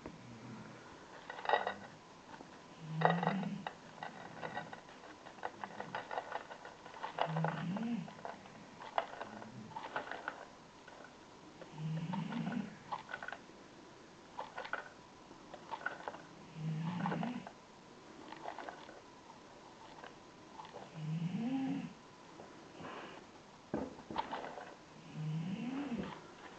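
Iodine crystals clicking and rustling as they are scooped into a polythene bag on kitchen scales, with short taps between. A low, pitched sound of about a second, rising in pitch, repeats about every four and a half seconds, like slow snoring breaths.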